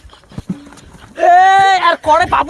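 A man's loud, drawn-out yell, held at a steady pitch for most of a second near the end, after a couple of light knocks.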